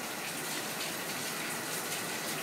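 A steady, even rushing noise with no rhythm or tone.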